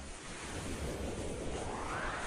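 A rushing-noise whoosh sound effect that sweeps upward in pitch over the second half.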